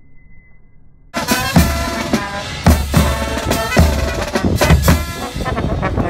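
Military marching band playing: trumpets and other brass over snare drum, cymbals and heavy bass-drum beats. It starts suddenly about a second in.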